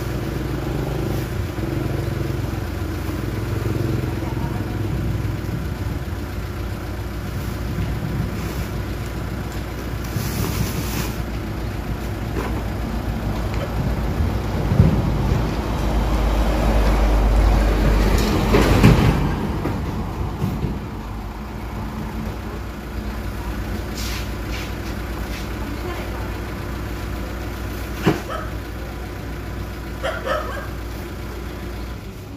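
A motor vehicle's engine runs steadily with a low rumble, swelling louder for a few seconds about halfway through, as with a vehicle passing or revving. One sharp knock is heard near the end.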